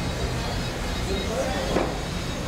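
Indoor exhibition-hall ambience: a steady low rumble with faint, distant voices.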